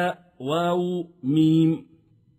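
A man's voice spelling out Arabic letter names one at a time in a drawn-out, level, chant-like recitation, as in a Quran-reading drill. There are three held syllables, and the voice falls silent near the end.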